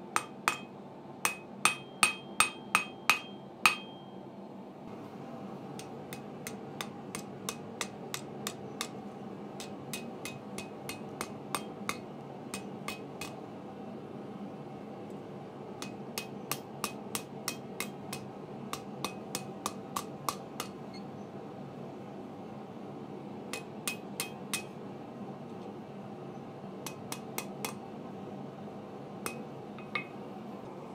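Hand hammer striking a red-hot mild steel bar on a steel anvil. A run of loud blows, about two a second, comes in the first few seconds with a faint ring. After that come lighter, quicker blows in short clusters, all over a steady background hiss.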